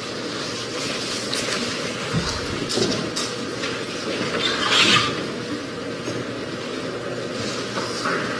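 Steady courtroom room noise with scattered light knocks and rustles. A louder rustle, such as papers being handled, comes about five seconds in.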